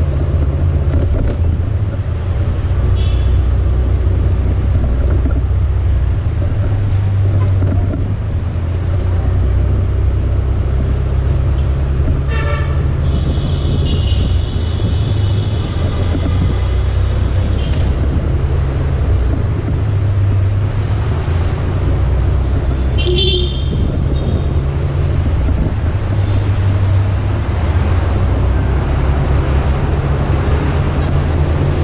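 Motorcycle ride in city traffic: a steady low rumble of engine and wind on the microphone. Vehicle horns toot briefly about 3 s in, near 12 s and near 23 s, with one longer horn from about 13 to 16 s.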